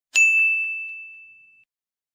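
A single bright bell-like ding, a logo sound effect, struck once and ringing out as it fades away over about a second and a half.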